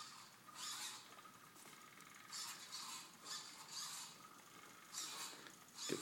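Faint motor whirring from a small homemade wheeled robot driving on a hardwood floor, coming in short high-pitched bursts about once a second as its steered front wheel turns back and forth.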